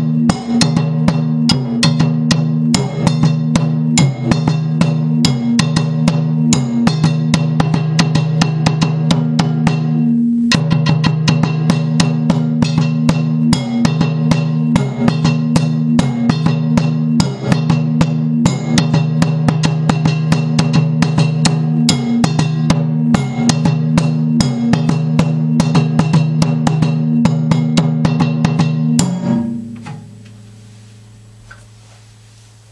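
Dunun bass drum with a mounted bell, played with sticks: a fast, steady rhythm of drum strokes and bell strikes that combine the drum's tone with the bell's ringing. There is a very brief break about ten seconds in, and the playing stops just before the end.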